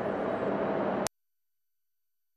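Steady ambient noise at sea, a rushing haze with a faint hum, that cuts off abruptly about a second in. It gives way to silence with only a faint, thin high steady tone.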